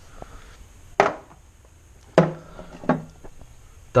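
A few sharp knocks and clunks, about a second apart, as a metal hip flask and small objects are handled and set down on a wooden shelf.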